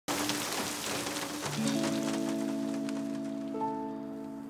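Heavy rain falling, thinning out over the first few seconds, while soft sustained music chords come in about a second and a half in and take over.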